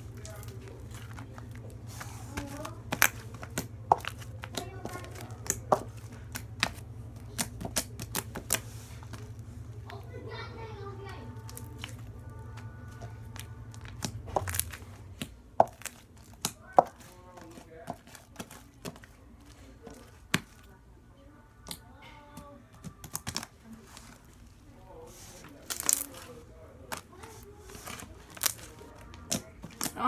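Homemade slime being stretched, folded and squished by hand on a wooden floor, giving irregular sharp pops and clicks, a few of them loud.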